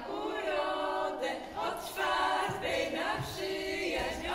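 Several voices singing unaccompanied, a choir-like chant of long held notes that change about once a second.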